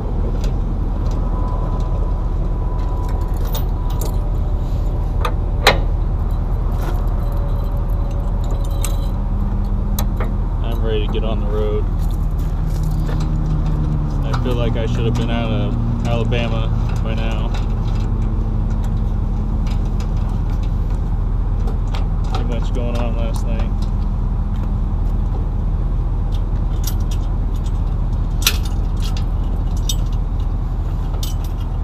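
A diesel pickup engine idling steadily, its pitch settling a little lower partway through. Over it come a few sharp metallic clinks from the trailer hitch, jack and safety chains as the trailer is hooked up.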